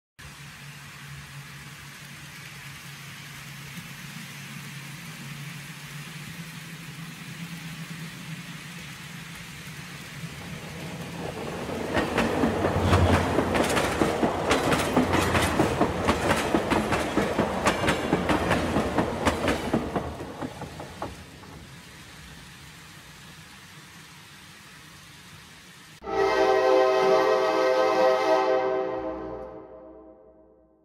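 N scale model trains running on a layout: a steady low motor hum, then a loud clatter of cars running over the track for about ten seconds as a passenger train passes close, easing back to a hum. Near the end, a sustained horn-like tone starts suddenly and fades out.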